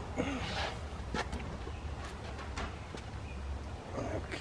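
A removed car seat being manoeuvred out through a rear door: a short grunt of effort just after the start, then several sharp knocks and clicks of the seat's plastic and metal frame bumping the door opening.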